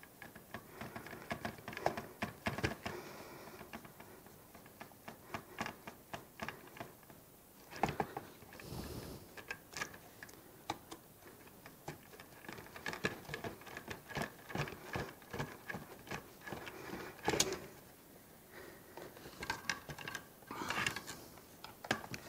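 Small hand screwdriver driving screws into a radio transmitter's plastic gimbal mount: irregular light clicks, ticks and scrapes of metal on plastic, with a few sharper knocks. Near the end, the opened transmitter case and its wiring being handled.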